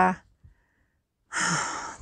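A woman's "and uh" trailing off, a pause of about a second, then a breathy sigh from about one and a half seconds in that fades as it goes.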